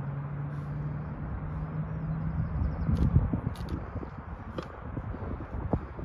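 Wind rumbling on the microphone in open countryside, with a steady low engine drone for the first two and a half seconds and a louder gust about three seconds in.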